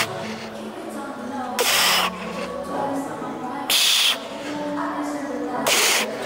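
A weightlifter's sharp, forceful exhales, one per rep, about every two seconds, three in all, while pressing heavy dumbbells on a bench.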